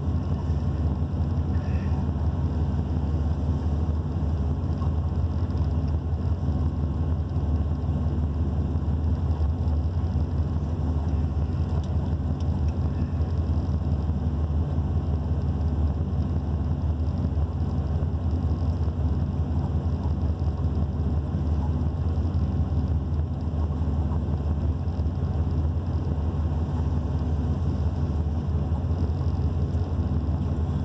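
Dually pickup truck's engine idling steadily, heard from inside the cab as an even low rumble.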